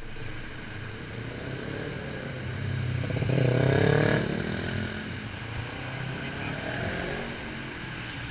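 A motorcycle engine passing close by, getting louder as it nears and loudest about three to four seconds in, then fading away, with other motorcycles running steadily in the distance.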